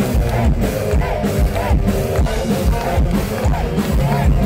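Heavy metal band playing live: distorted electric guitars and drums in an instrumental passage, with a melody line that rises and falls in pitch over and over.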